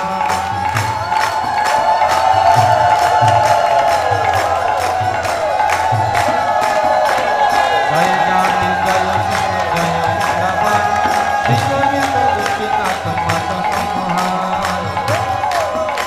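Devotional kirtan at full swing: a harmonium holds its melody while a mridanga drum beats a steady rhythm and hand cymbals strike several times a second. A large crowd of voices chants along loudly.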